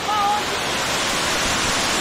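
Waterfall pouring steadily, a loud, even rush of falling water. A brief voice sounds right at the start.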